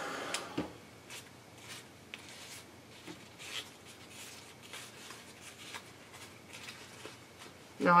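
A heat gun's blowing cuts off with a click about half a second in. It is followed by faint, scattered crinkling and rubbing as the heated Tyvek (spunbond olefin) is handled and pressed flat with the fingers on a Teflon pressing sheet.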